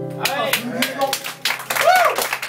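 The final strummed acoustic guitar chord rings out and stops just after the start, then a small audience breaks into clapping, with voices calling out over the claps.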